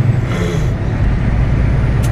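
Semi-truck's diesel engine running steadily under way, heard inside the cab as a low drone with road noise. A brief hiss comes about half a second in.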